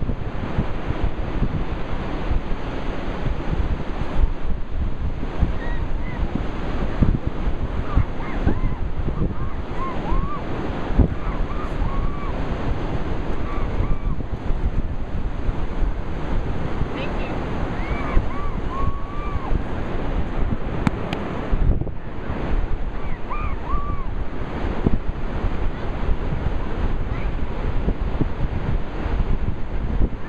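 Steady wash of ocean surf with wind buffeting the microphone, and a few short voice sounds now and then.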